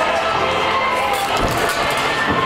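Carousel music playing, with crowd chatter and riders' voices mixed in.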